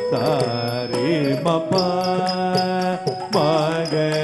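Carnatic music for a Bharatanatyam varnam: a singer's voice with sliding, ornamented notes, holding one long note in the middle, over steady percussion strokes.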